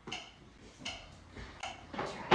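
Metronome clicking at a steady beat, a little under 80 beats a minute, with each tick a short, bright click.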